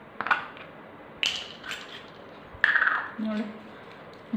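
Metal parts of a stainless steel chakli press, its small steel shaping discs among them, clicking and clinking together as they are handled. There are a few separate sharp clinks, and the one near the end rings briefly.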